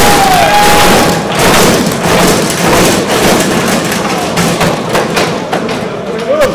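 Hydraulic lowrider hopping and bouncing on its suspension: a run of irregular thuds and knocks, several a second, as the car drops and lifts. A crowd cheers and whistles over the first second.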